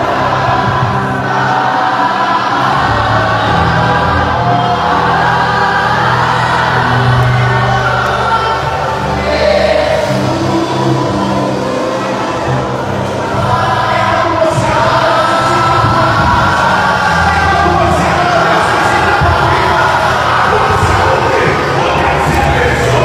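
Live gospel worship music: instruments holding steady low notes under many voices singing together, with a congregation joining in.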